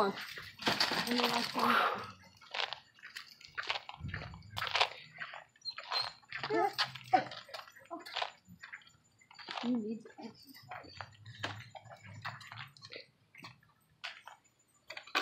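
Rustling, scraping and knocking of a handheld phone being carried while walking, in short irregular bursts, with a few brief spoken words in between.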